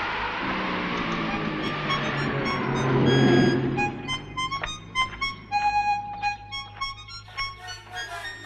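Harmonica playing: a blurred, breathy sound with low held tones for the first half, then a tune of short, clear notes with one longer held note.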